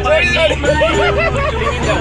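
People's voices over music, with a held note and a steady low hum underneath.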